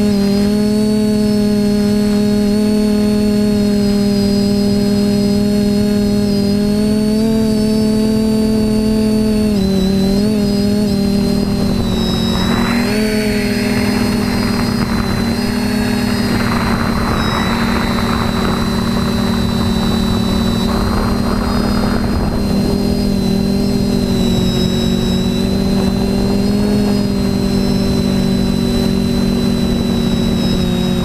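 TBS Discovery quadcopter's brushless motors and propellers whining steadily in flight, heard up close from the camera mounted on it. The pitch dips briefly with a throttle change about ten seconds in, and a rushing noise joins over the middle third.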